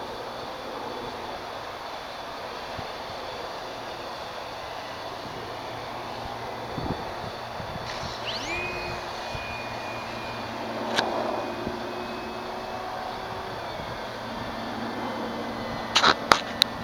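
An E-flite Carbon-Z electric RC plane's brushless motor, over a steady rushing noise. About halfway through, as the plane sets off from the grass, the motor whine rises quickly and then holds a steady pitch for several seconds. There is a short click near the end.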